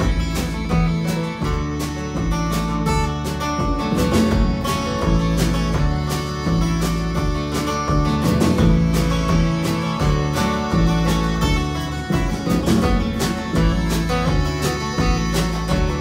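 Instrumental break of an acoustic folk band: acoustic guitar strummed in a steady rhythm over a walking upright bass line, with a melody played over the top.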